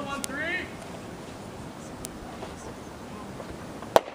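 A voice calls out briefly at the start, then low, steady outdoor background noise, and one sharp snap just before the end.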